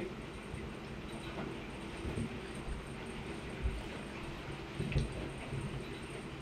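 Someone quietly eating a soft gummy Jelly Baby: faint chewing and mouth sounds over quiet room tone, with a few soft low thumps about two, three and a half, and five seconds in.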